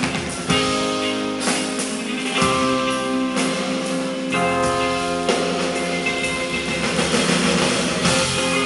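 A live indie rock band playing an instrumental passage without vocals: electric guitar, keyboards and drums, with sustained chords changing about once a second.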